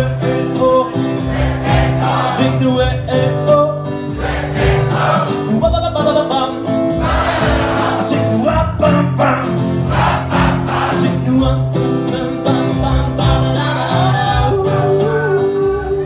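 Live music: a male singer's voice with many voices singing together in a choir-like sound, over a steady low bass.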